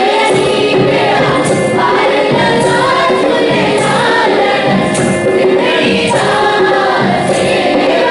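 A chorus of young girls' and boys' voices singing a qawwali together, with hand claps and drum accompaniment.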